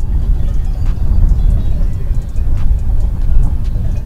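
Wind buffeting a shotgun microphone outdoors: a loud, gusting low rumble that swamps the recording so the scene is muffled and hard to hear.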